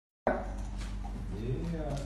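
Faint, indistinct voice over a steady low hum, with a short vocal sound near the end.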